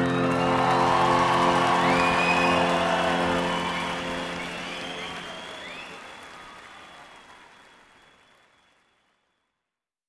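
The band's final held chord ringing out and dying away, with a live audience applauding and whooping. Everything fades out to silence about eight seconds in.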